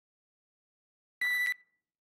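A single short, very high synthesizer note from the Taqsim app played on the iPad's on-screen keyboard, two octaves up, sounding like a beep. It comes about a second in and lasts about a third of a second.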